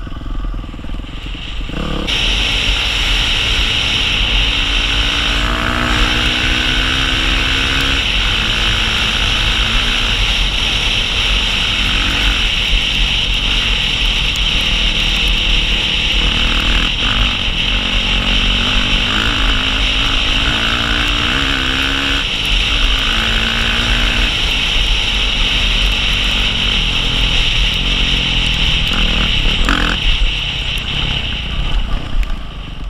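Yamaha dirt bike engine running under load, its revs rising and falling again and again as the rider works the throttle and gears, getting louder about two seconds in. A steady rush of wind over the helmet-camera microphone runs underneath.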